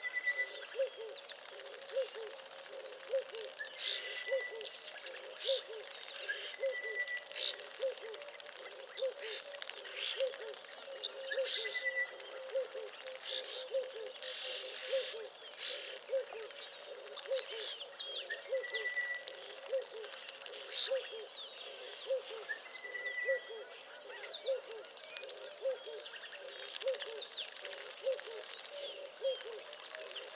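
Wild birds calling and chirping, with a short steady whistle repeated every few seconds, over a low call that pulses evenly a few times a second throughout.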